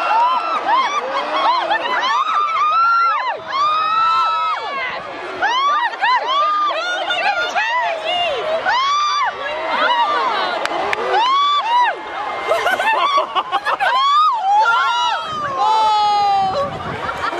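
Large crowd of spectators cheering and shouting, with many overlapping whoops and yells that rise and fall in pitch.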